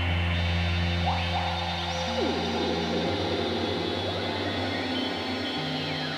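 Eurorack modular synthesizer playing ambient glitch music: a held low bass drone that breaks into a fast stuttering pulse about three seconds in, under sustained tones and short rising pitch glides.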